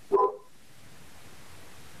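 A dog barks once, a short sharp bark about a moment in, followed by a steady low hiss of background noise.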